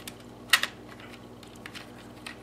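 Small plastic radio case being handled, giving a few light clicks and one sharp click about half a second in.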